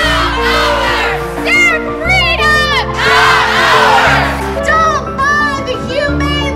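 Crowd of marchers shouting and chanting, swelling into louder crowd noise around the middle, over a music bed of sustained low notes that change about every two seconds.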